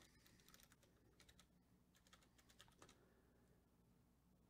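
Faint typing on a computer keyboard: a scatter of light, irregular clicks over near silence.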